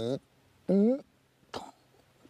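A man's voice making two short, pitched vocal sounds, the second louder and bending in pitch, followed by a brief click about a second and a half in.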